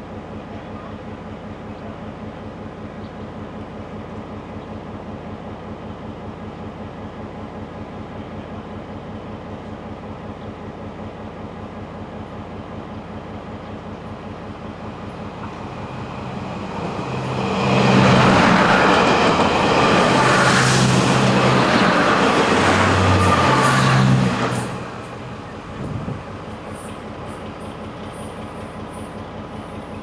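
Diesel multiple-unit train passing close by on the adjacent track. It builds up from about 16 seconds in, is loud for about seven seconds, and drops away quickly near 25 seconds, over a steady low rumble of an idling diesel train.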